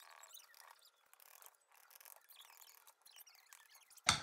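Near silence, with only faint, short, high-pitched chirps and scratches.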